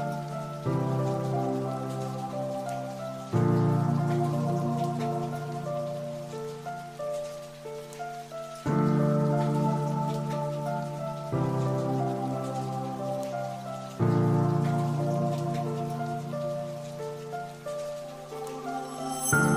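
Background music: soft sustained keyboard chords, each struck anew every few seconds and left to fade, over a steady rain-like patter.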